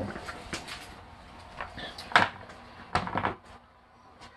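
Handling noise: a few short knocks and a brief clatter, the sharpest about halfway through, as a prop skull is fetched and set down on the top of a box.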